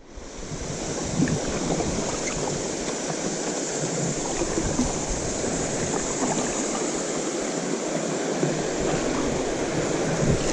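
Steady rush of creek water running over shallow riffles, mixed with wind on the microphone. It comes in abruptly at the start and then holds even.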